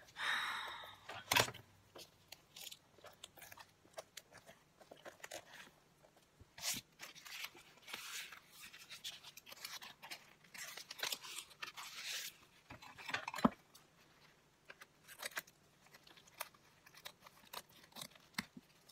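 Collage papers being handled, torn and cut with scissors: irregular rustling and tearing with scattered sharp snips and clicks, the longer stretches of tearing noise in the middle.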